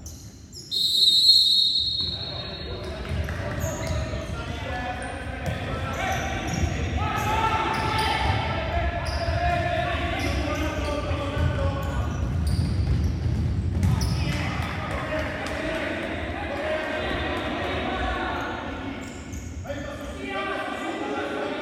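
A referee's whistle, one long blast about a second in, starting play in a futsal match. Then the ball is kicked and bounces on the hardwood court while players shout.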